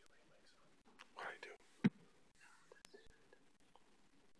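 A brief, faint whisper picked up by a desk microphone, followed by a single sharp click a little under two seconds in.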